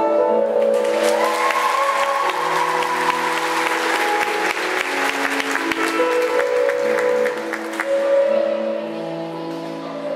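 Audience clapping breaks out about a second in over the routine's recorded music and dies away near the end, while the music plays on throughout.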